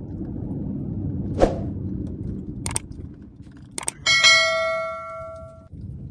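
Subscribe-button sound effect: a few sharp clicks, then a bright bell ding about four seconds in that rings for over a second and stops abruptly. Low car road noise runs underneath.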